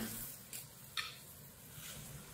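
Faint sizzling of sauce boiling in a wok around fried eggs, with a single light click about a second in.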